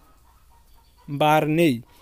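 About a second of near silence, then a single drawn-out vocal sound in a man's voice, rising and then falling in pitch and lasting under a second.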